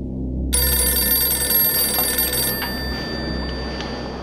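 Telephone bell ringing: one ring starts suddenly about half a second in, holds for about two seconds, then dies away. A low steady drone runs beneath it.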